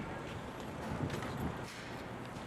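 Street sounds: a low traffic rumble with a few irregular clacks and knocks.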